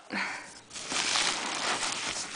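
Bubble-wrap packaging rustling and crinkling as a wrapped sisal-rope scratcher is slid out of a cardboard box, steady from about a second in.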